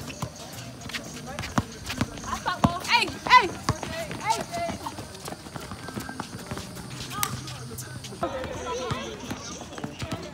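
Basketballs bouncing and sneakers running on an outdoor hard court, a string of sharp knocks, with girls' voices calling out loudest around three seconds in.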